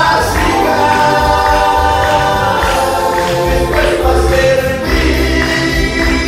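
Live gospel worship music through a church PA: a man singing into a microphone with the band, acoustic guitar and keyboard, backing him over a steady, pulsing bass beat.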